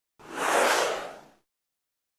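A single whoosh sound effect for a TV news logo transition, swelling and then fading away over about a second.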